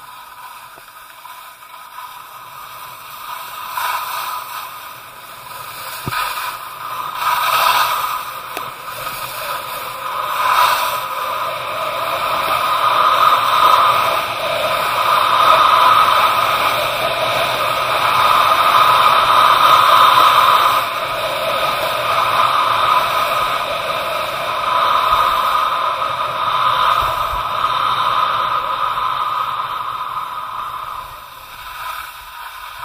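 Continuous hissing scrape of a descent on groomed snow, the rider's edges carving over the packed surface. It builds a few seconds in, swells loudest through the middle of the run and eases off near the end as the rider slows at the bottom.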